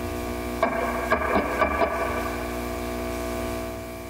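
Electric guitar played through an amplifier: sustained notes ringing, with a note picked about half a second in and a quick run of short picked notes around one and a half seconds, the ringing dying away near the end. A steady low amplifier hum runs underneath.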